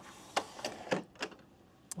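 Telescopic trolley handle of a large portable power station being pushed back into its housing. It makes a string of clicks and knocks about three a second as it slides in, with a sharp click near the end as it seats.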